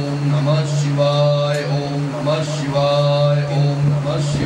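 A male voice chanting Sanskrit Vedic mantras in long held notes over a steady low drone.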